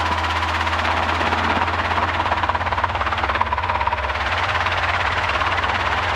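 Robinson R22 helicopter's rotor and piston engine running steadily, heard from the cockpit, with a rapid even beat and a faint steady whine; the throttle has just been rolled back on to recover power at the end of a practice autorotation.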